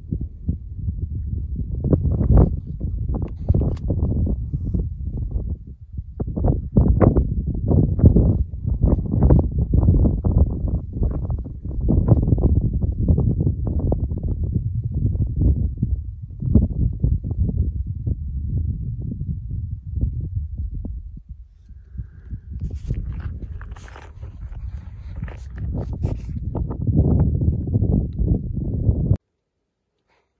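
Footsteps crunching over loose, rocky gravel ground, with a heavy low rumble of wind buffeting the microphone; it cuts off suddenly near the end.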